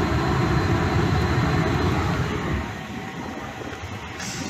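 Greenheck gas-fired make-up air unit running at maximum high fire: a steady rumble of burner and blower that gets noticeably quieter about two and a half seconds in.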